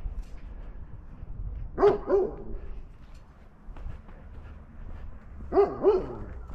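A dog barking: two quick double barks, about two seconds in and again near the end, over low wind rumble on the microphones.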